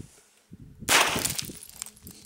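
One pistol shot about a second in: a sharp, loud crack that trails off over about half a second.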